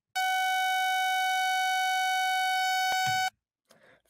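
Web Audio API oscillator node playing a sawtooth wave at about 750 Hz as a synthetic mosquito: one steady, very annoying buzzing tone that lasts about three seconds and cuts off suddenly.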